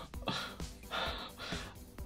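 Three soft, breathy exhalations over faint background music.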